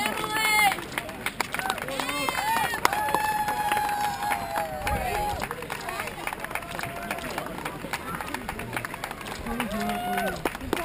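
Roadside spectators shouting and cheering as a stream of runners goes by, including a few long drawn-out calls. Under the voices are many quick footfalls of running shoes on asphalt.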